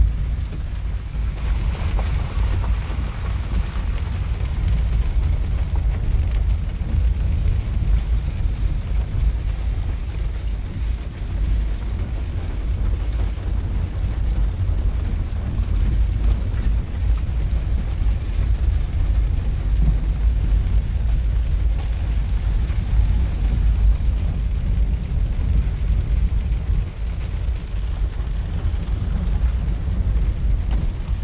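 Steady low road rumble and wind buffeting inside a moving car's cabin as it drives a dirt road.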